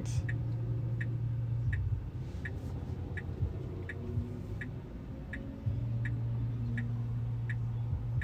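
A Tesla's turn-signal indicator ticking steadily inside the cabin, about three clicks every two seconds, while the car waits at a light. A low cabin hum runs underneath and drops away for a few seconds in the middle.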